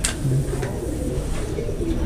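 A bird cooing: a few short, low coos at a steady pitch.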